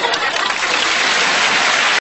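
Audience applause, steady and dense.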